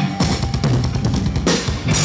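Live heavy rock band in a drum-led passage, with rapid kick and snare hits under electric guitars. The low end drops away briefly near the end while the cymbals carry on.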